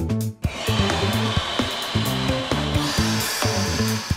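Cartoon sound effect of a long, steady blow inflating a huge soap bubble, a hiss that starts about half a second in, over background music with a low bass line.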